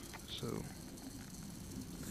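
A man's voice says one short word, then only a faint, steady background hiss; no motor is running.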